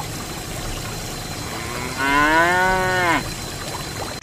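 A cow moos once, a single call of just over a second about two seconds in, its pitch rising then falling. Under it, water pours steadily from a pipe into a trough.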